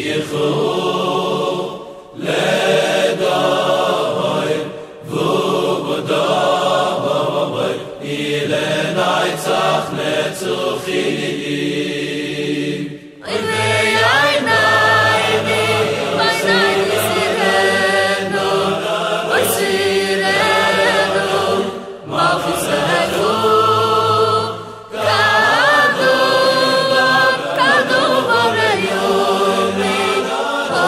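Choral singing of a Hasidic song in the Vizhnitz tradition, sung in phrases separated by brief pauses. About halfway through it becomes fuller and louder, with a heavier bass.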